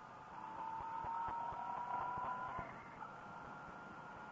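Yamaha FZ-09 motorcycle engine heard faintly as a thin whine that rises slightly in pitch as the bike accelerates, then fades near three seconds in.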